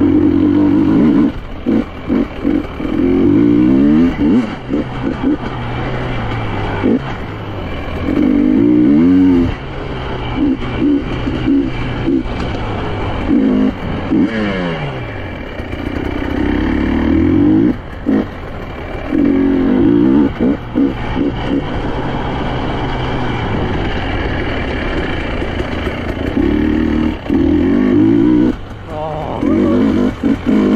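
2023 KTM 300 EXC two-stroke enduro motorcycle being ridden, its engine revving up and down over and over: repeated bursts of throttle that climb in pitch, then drop back as the throttle is rolled off.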